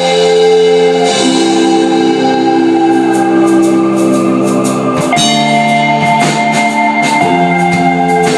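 Live rock band playing an instrumental passage: electric guitars hold ringing chords that change every second or two, and drum-kit cymbal hits join in about three seconds in.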